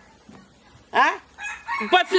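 A chicken calls once about a second in: a short, loud squawk that rises and then falls in pitch.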